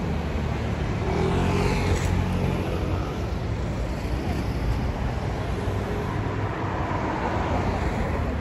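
Road traffic noise, with a motor vehicle passing close by about one to three seconds in.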